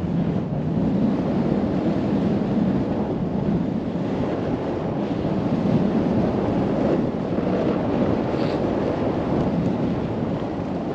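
Steady rush of wind over the microphone while snowboarding downhill at speed, mixed with the board's edges scraping and sliding over packed, groomed snow.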